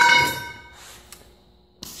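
A length of steel tubing set down on a hard surface, ringing with a clear bell-like tone that fades away within about a second.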